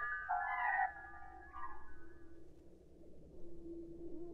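Quiet passage of early electronic music on a Buchla synthesizer: sustained high tones fade away, with a short mewing glide about a second and a half in. A low steady tone enters near the end.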